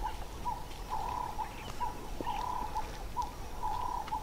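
African wild dogs twittering: high, bird-like chirping calls, two or three a second, some clipped short and some drawn out.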